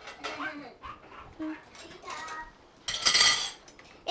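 Dishes and silverware clinking and clattering, loudest in one brief clatter about three seconds in, with faint voices underneath.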